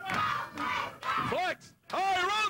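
Wrestling crowd shouting and yelling, with a loud voice rising and falling above it; it breaks off shortly before the end.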